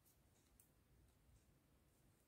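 Near silence, with a few faint clicks of metal knitting needles being worked through pom-pom yarn.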